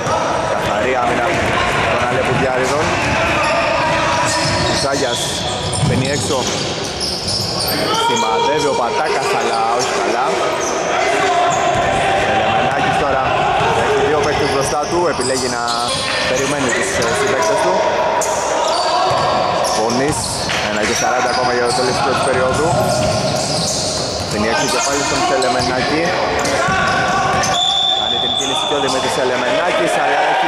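Basketball dribbled and bouncing on a wooden gym court during live play, with players' voices echoing in the hall. A short, high referee's whistle near the end calls a foul.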